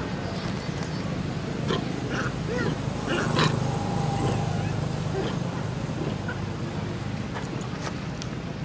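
A few short, pitched squeaks from a young long-tailed macaque, about two to four seconds in, over a steady low background hum.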